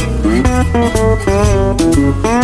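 Instrumental jazz break with a guitar playing single-note lines, notes sliding up into pitch, over a bass line.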